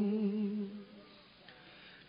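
A chanting voice holds the last note of a line of Vietnamese verse, fading out within the first second, then a short quiet pause before the next line.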